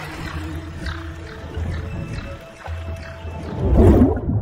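Cinematic logo-trailer soundtrack of music and sound design: a low rumble under held tones, swelling loudly just before the end.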